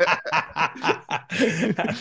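Two men laughing together in short, repeated bursts of chuckling.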